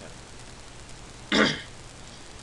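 A person clears their throat once, briefly and loudly, about a second and a half in.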